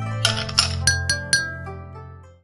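A spoon clinking against a small glass about five times in quick succession as it stirs, each clink ringing briefly, over a sustained musical chord that fades away toward the end.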